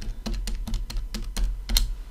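About a dozen quick key presses, clicking keys typed in rapid succession as the multiplication 120 × 24 × 30 is entered.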